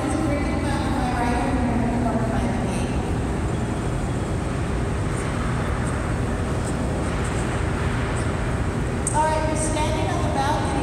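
Steady low rumble of the Hoover Dam's water-driven turbine-generator units running in the powerhouse hall. Visitors' voices sound over it in the first few seconds and again near the end.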